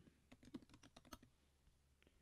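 Faint typing on a computer keyboard: a quick run of about a dozen keystrokes lasting about a second.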